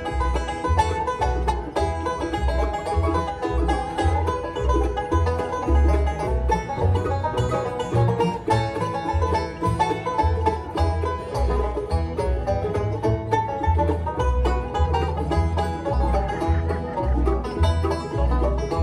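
Live bluegrass band playing an instrumental break with no singing. The banjo is prominent over acoustic guitar and fiddle, and the upright bass keeps a steady pulsing beat.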